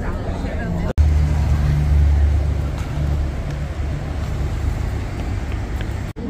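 A steady low rumble, loudest for a couple of seconds after a sudden cut about a second in, with faint voices at the start.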